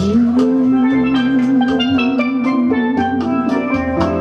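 Steelpan played with a quick run of struck, ringing notes over drums, while a man holds one long sung note with a slight vibrato through most of it.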